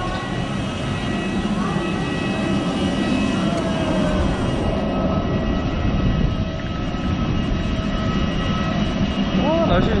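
Steady whine of a parked jet airliner on the apron, several high tones held over a low rumble, with wind buffeting the microphone.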